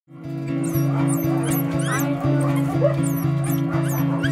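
Background music with steady low sustained tones and an even beat about twice a second. Over it come repeated short, high, falling cries from caged dogs whining.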